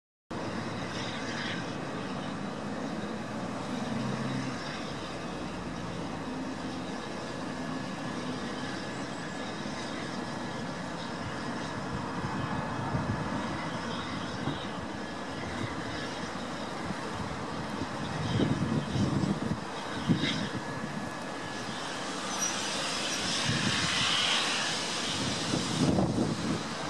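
Steam-hauled passenger train pulling slowly away from a station platform: a steady, noisy rumble and hiss. Louder low swells and a few knocks come about two-thirds of the way through, then the hiss grows near the end.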